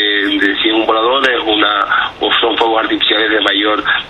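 Speech only: a man talking in Spanish over a telephone line in a radio broadcast, the voice thin and narrow like a phone call.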